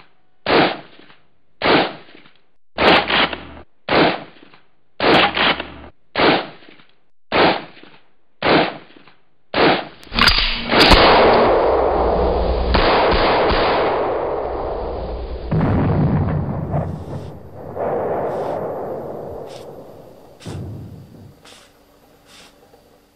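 Single gunshots, about one a second for the first ten seconds, a few of them doubled. They are followed by a long, loud rumble that starts about ten seconds in, swells twice more and fades out near the end.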